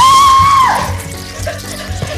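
A man's high scream held for most of a second, then fading into softer cries, over background music with a steady low bass.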